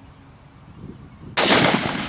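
A single shot from a Ruger American bolt-action rifle in .308, about a second and a half in, with a sharp crack followed by a report that echoes and fades over most of a second.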